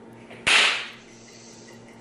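A single sudden, loud burst of noise about half a second in, dying away within about half a second.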